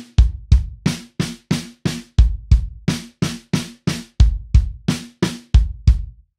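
Drum kit played slowly in a linear fill, about three strokes a second: single hand strokes on the drums alternate with pairs of bass-drum kicks, following the sticking RLKK RLRLKK. The strokes stop just before the end.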